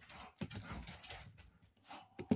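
Faint clicks and light knocks of the small metal locomotive chassis and its parts being handled on a workbench.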